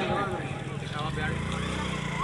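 A steady low hum with faint, indistinct voices in the background.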